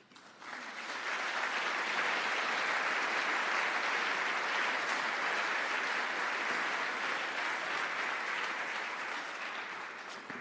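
An audience applauding, building up over the first second or two, holding steady, then tapering off near the end.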